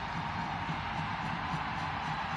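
Stadium crowd cheering after a goal, a steady wash of noise with no single standout event.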